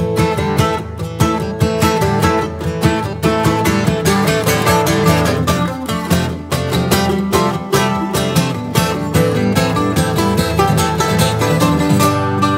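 Acoustic guitar and mandolin playing an instrumental break together, with quick picked notes over the guitar's chords.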